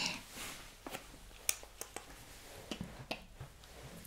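A woman's quiet, breathy laughter at the start, then a few faint, sharp clicks scattered through the rest.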